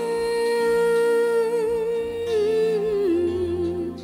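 A woman's voice holding one long wordless note over a soft accompaniment in a pop ballad. The note wavers slightly midway and steps down to a lower note about three seconds in.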